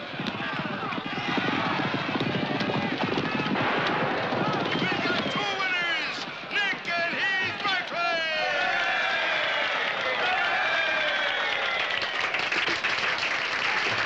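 A crowd cheering and shouting, many voices over one another, with a man's voice calling out above them; the crowd breaks into clapping near the end.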